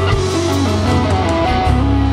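Live band playing a song, with strummed acoustic guitar, electric guitar, bass and drums; a melodic line moves over the chords, and about three-quarters of the way through the band settles onto a held chord.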